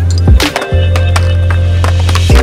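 Music with a heavy held bass and sharp hits, over the sounds of a skateboard doing nose stalls on a concrete ledge: wheels rolling and the board knocking onto the ledge.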